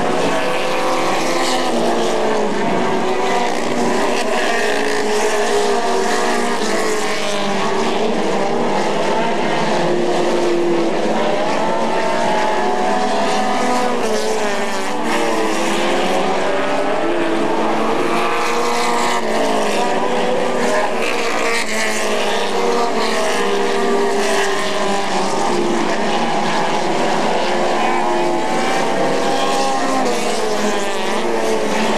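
Several Pro Stock race car engines running hard around a short oval. Their pitch rises and falls over one another as the cars accelerate down the straights and ease off into the turns.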